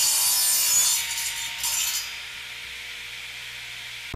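Wood-cutting sound effect, as of a saw or cutter shearing through a wooden beam. It is a loud rasping cut for about the first two seconds, then settles into a quieter steady hiss.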